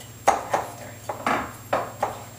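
A metal pastry cutter knocking and scraping against a glass mixing bowl about four times as it squishes butter and sugar into a crumble topping.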